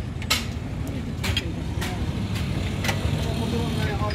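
Socket wrench being worked on the bolts of a truck leaf spring pack, giving sharp metallic clicks at irregular intervals, over a steady low engine rumble.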